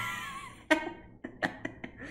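A man laughing: a drawn-out laugh that fades over the first half second, then several short, breathy bursts of laughter in the second half.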